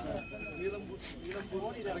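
A loud, high-pitched squeal of microphone feedback through the speaker's handheld microphone and its amplifier. It is heard over a man's speech, holds one steady pitch, and cuts off about a second in.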